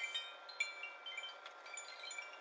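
Soft background music of high, tinkling chime-like notes, sparser through the middle.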